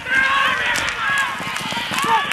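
Hoofbeats of two racehorses galloping on a dirt track, an irregular drumming of thuds, under a voice calling out that runs throughout.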